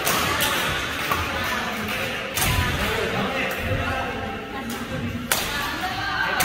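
Background music over sharp hits of badminton rackets striking shuttlecocks in a net drill, with thuds of footwork on the court floor; the loudest hits come about two and a half and five seconds in.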